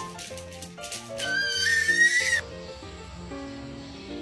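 Background music, a melody of short held notes, with one loud, high animal call about a second long that rises slightly in pitch and cuts off abruptly a little past halfway.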